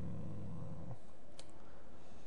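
A single sharp computer-mouse click about one and a half seconds in, over steady microphone hiss. Before it, in the first second, a low drawn-out vocal hesitation fades out.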